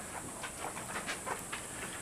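Wolf clicking its teeth: a few sharp, irregular clicks over a steady high hiss.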